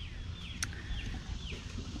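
A bird calling faintly in the background: a series of short, high notes that each slide downward. A single sharp click comes a little over half a second in.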